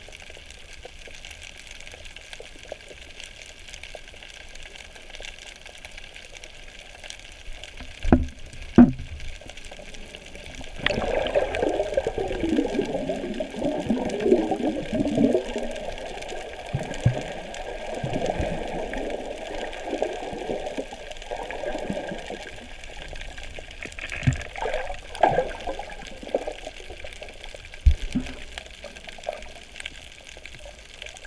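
Water heard through a submerged camera: a steady hiss, two knocks about eight seconds in, then about ten seconds of bubbling and sloshing water, with a few more knocks near the end.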